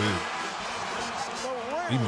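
Men talking over a basketball game broadcast, with a steady background of noise between the words.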